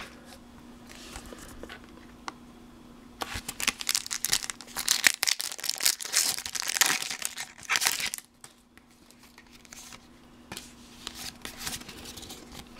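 Pokémon TCG booster pack wrapper being torn open and crinkled, a run of crackling for about five seconds starting about three seconds in, followed by a few faint ticks of handling.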